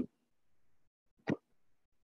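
Near silence, broken once a little past halfway by a single short pop.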